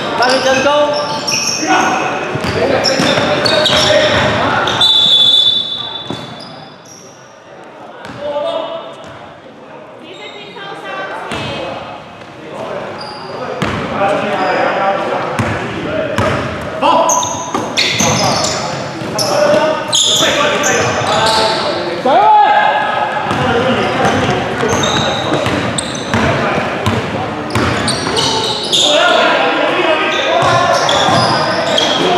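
Indoor basketball game: players' voices and calls echoing in a large gym hall, with the ball bouncing on the hardwood court. It goes quieter for a few seconds early on, then the voices and bouncing pick up again.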